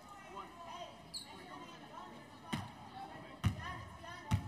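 A basketball bouncing twice on a hardwood court, about a second apart in the second half, over faint background voices, with a brief high squeak about a second in.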